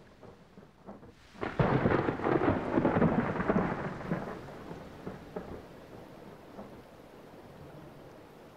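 A thunderclap rolls in about a second and a half in, rumbles loudly for a couple of seconds and fades away, leaving steady rain falling.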